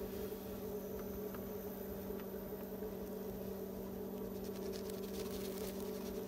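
Electric potter's wheel motor humming steadily while wet hands squeeze and cone up clay on the spinning wheel head, with soft wet rubbing and a few faint ticks.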